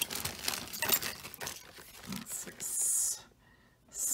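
Plastic zip-top bags rustling and crinkling as they are handled, in short scattered bursts, with one longer rustle near the end.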